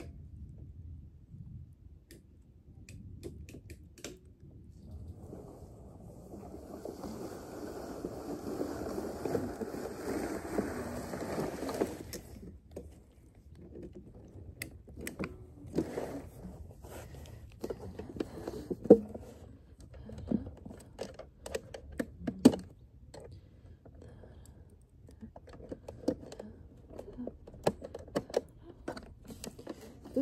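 Cordless lawn mower running and cutting grass for several seconds, then cutting out abruptly, which the owner puts down to a full grass box. Scattered clicks and knocks follow.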